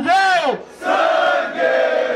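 A man's shouted call ending on a long, arching "ver", then a crowd of voices shouting back together in unison for about a second: a rap-battle call-and-response hype chant.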